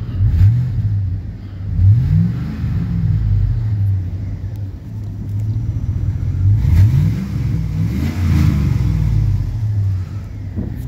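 2001 GMC Yukon's V8 idling and revved three times: two quick revs about a second and a half apart near the start, then a longer rev in the second half, dropping back to idle between each.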